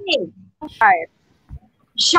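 Speech only: two short spoken utterances in the first second, then a pause.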